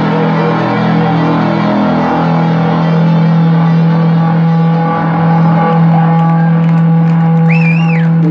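Live instrumental stoner-rock band, electric guitar and bass holding a loud, sustained droning chord that rings out without clear drum beats. Near the end a high whistle rises and falls over it.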